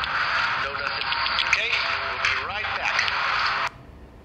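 Indistinct man's speech over a steady hiss, played back through a small device speaker, cutting off suddenly near the end.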